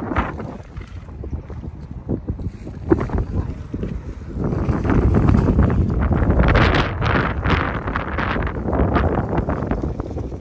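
Wind blowing across the phone's microphone, a low, uneven rush with irregular buffeting that grows louder about halfway through.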